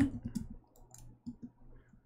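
Computer keyboard keys being typed: a quick run of key clicks in the first half second, then a few scattered keystrokes.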